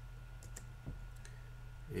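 A few faint, scattered clicks from a computer keyboard and mouse over a low, steady hum.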